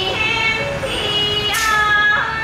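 Live Thai classical singing accompanying a khon masked-dance performance: a voice holding long notes that step up and down in pitch over instrumental music, with a bright crash about one and a half seconds in.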